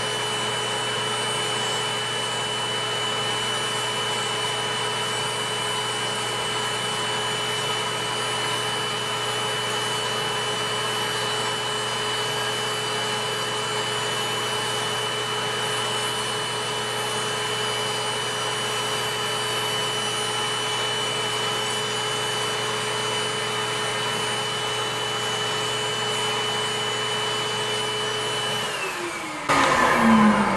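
Electric podiatry nail drill with a metal burr running at a steady speed with a constant whine as it grinds down a toenail. About a second and a half before the end its pitch falls as the motor winds down.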